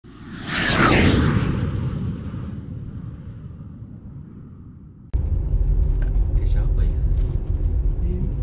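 A cinematic whoosh-and-boom logo sound effect: a deep rumble with a falling sweep swells in about half a second in, peaks about a second in, and fades away over several seconds. About five seconds in it cuts abruptly to the steady low rumble of a vehicle driving along a road.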